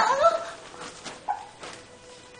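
A woman's startled, high-pitched cry of "Oh!" that slides in pitch and dies away in the first half second. A brief second, fainter exclamation follows about a second and a quarter in.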